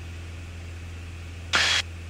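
Light aircraft's piston engine droning steadily, heard as a low hum under hiss through the headset intercom, with a brief spoken sound near the end.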